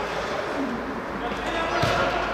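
A football kicked once, a single sharp thud near the end, over players' voices in an indoor five-a-side hall.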